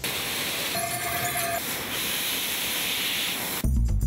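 Steady, loud hiss of glass-factory machinery working red-hot glass, with a brief steady tone about a second in. Music with a bass line comes in near the end.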